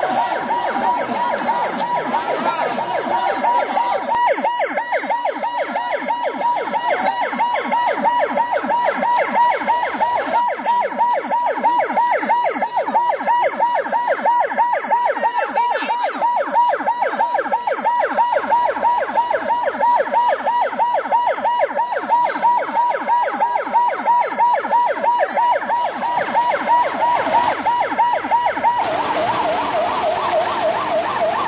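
Emergency vehicle siren in a fast yelp, its pitch warbling up and down several times a second without a break.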